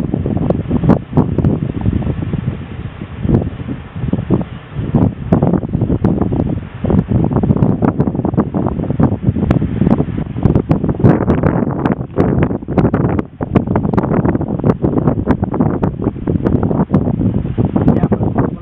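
Wind buffeting the microphone: a loud, uneven rumble with frequent crackles.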